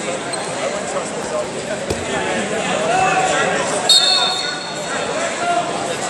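Indistinct voices of coaches and spectators shouting and talking, echoing in a large sports hall. A single thud comes about two seconds in, and a brief high squeak about four seconds in is the loudest moment.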